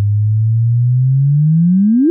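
Audio rendering of the gravitational-wave signal from the GW170817 neutron-star merger, as recorded by the LIGO detectors. A loud low tone rises slowly in pitch, then sweeps upward faster and faster near the end. This is the chirp of the two neutron stars spiralling together just before they merge.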